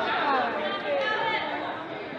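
Several people's indistinct voices calling out and chattering in a gymnasium, easing off toward the end.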